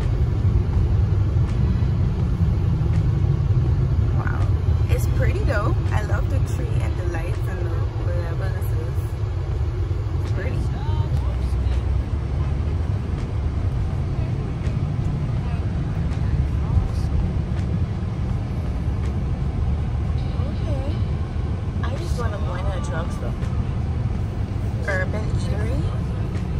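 Steady low rumble of a car's engine and tyres, heard from inside the cabin while the car drives slowly along a town street.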